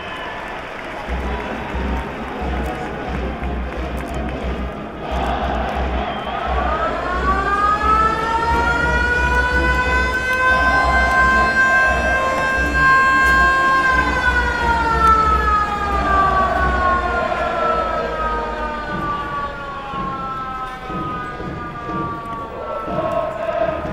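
Hanshin Koshien Stadium's motor siren, sounded for the start of play. It winds up from about six seconds in, holds a steady wail, then winds slowly down toward the end, over crowd noise from the stands.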